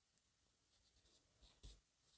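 Near silence, with faint handling sounds of a yarn needle and crochet yarn being worked through an earring hook, and one brief soft tick about one and a half seconds in.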